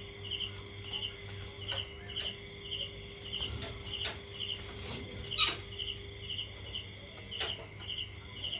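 A night insect chirping steadily: short, high, trilled chirps repeating about three times every two seconds. Over it come a few sharp clicks and rustles from the nylon webbing strap being wrapped and tied around a wooden post, the loudest a crisp knock about five seconds in.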